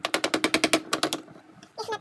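Wire whisk clattering against the side of a mixing bowl of cake batter, about a dozen quick strikes in roughly a second, then stopping. A brief voice sound comes near the end.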